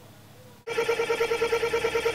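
An electronic ringing tone like a telephone ring starts suddenly about two-thirds of a second in. It holds one steady pitch and trills rapidly, about ten pulses a second.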